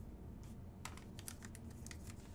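Trading cards handled by hand, a quick run of light clicks as the cards are slid and flicked against one another, from about half a second in for about a second.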